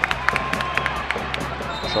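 Basketball game sound from the arena: crowd noise with short, sharp sneaker squeaks on the hardwood court, under background music.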